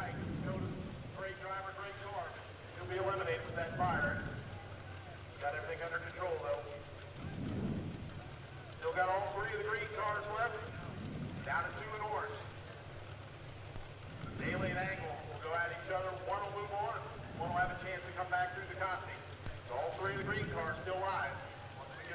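Indistinct talking, quieter than the commentary around it, with short low rumbles between the phrases.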